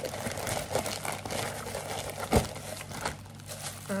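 Plastic poly mailer and plastic wrap crinkling and rustling as a hand rummages in the bag and pulls out a plastic-wrapped item, with one sharp knock a little past halfway.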